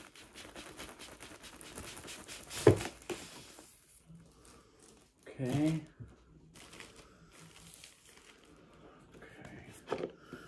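Thin plastic shrink-wrap crinkling and tearing as it is pulled off a cardboard box, busy for the first few seconds with one sharp, louder crackle about two and a half seconds in, then fading to faint rustles. A brief wordless voice sound comes about halfway through.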